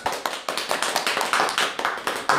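A few people clapping, quick irregular hand claps overlapping one another.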